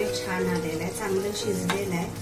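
A metal ladle stirs a thick, bubbling curry gravy in a cooking pot, with one sharp clink of the ladle against the pot about three-quarters of the way through. A held-note melody sounds underneath.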